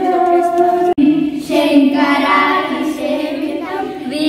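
A high singing voice holding long, gliding notes, with a brief break about a second in.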